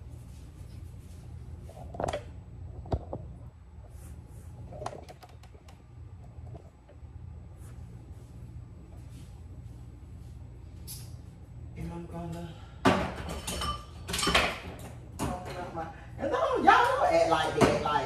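Kitchen handling sounds: a few light knocks and clicks over a low steady hum. A voice comes in about twelve seconds in and is loudest near the end.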